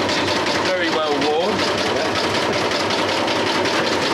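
Electric maggot shaker (a vibrating riddle) running, giving a steady, even mechanical vibration as it shakes maggots and sawdust to clean them.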